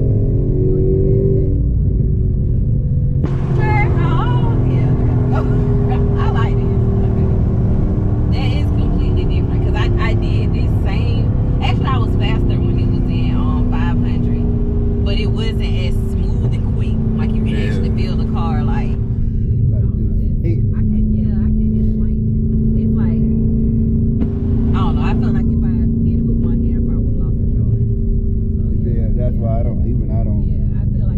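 Dodge Charger SRT Hellcat's supercharged V8 cruising at a steady speed, heard inside the cabin as a constant low drone whose pitch drifts only slightly, with road noise under it.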